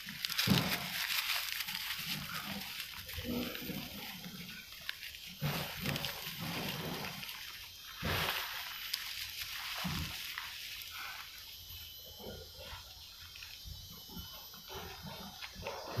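Dry bamboo leaves rustling and crackling as a hand rummages and digs through a loose pile of them on a large taro leaf, in irregular handfuls.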